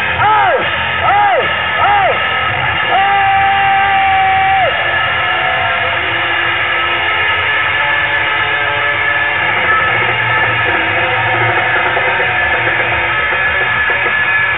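Loud live garage-rock band music: sustained distorted guitar with a series of swooping pitch bends in the first couple of seconds, then a single held high note, then a dense, droning wall of sound.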